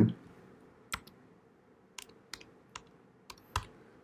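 Typing on a computer keyboard: about eight sharp, irregularly spaced key clicks, starting about a second in.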